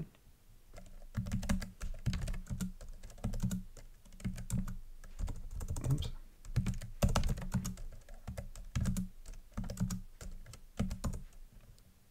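Typing on a computer keyboard: irregular runs of keystroke clicks with short pauses between them.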